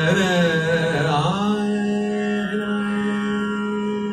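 Male voice singing a Hindustani raga-based phrase over a steady harmonium drone. It sings a wavering, ornamented run for about the first second and a half, then holds one long steady note.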